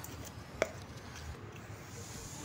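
A single short, sharp tap about half a second in, over faint steady background noise.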